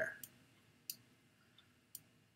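Three faint, sharp clicks of a computer mouse, the first just as a spoken word ends and the others about a second apart.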